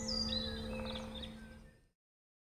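A struck bell ringing on as it decays, with birds chirping high over it, all fading out to silence near the end.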